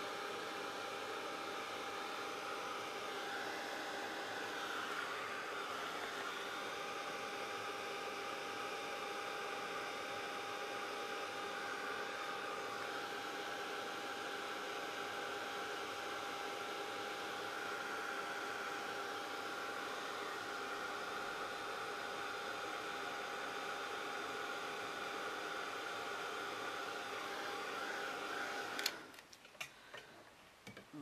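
Handheld craft heat tool running with a steady blowing hiss and a constant motor hum, heating gold embossing powder on the stamped images. It switches off shortly before the end.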